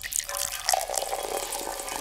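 Soda poured out of a can, splashing and fizzing.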